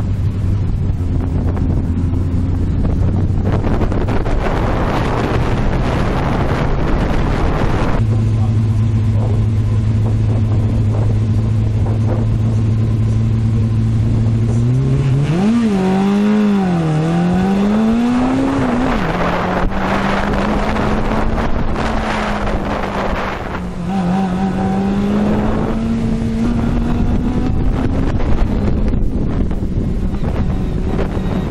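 Fiat 850 Spyder's small rear-mounted four-cylinder engine working hard on an autocross run, heard from the open cockpit with wind noise on the microphone. The engine note holds steady, then climbs and dips rapidly with the throttle through the middle before settling again.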